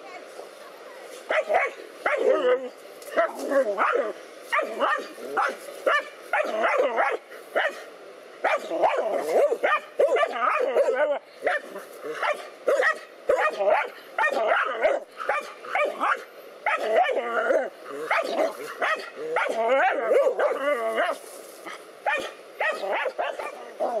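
Dogs barking at a snake, excited barks coming in quick runs one after another, starting about a second and a half in.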